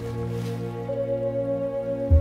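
Meditation music of sustained, overlapping singing-bowl tones, with a new, brighter tone entering about a second in.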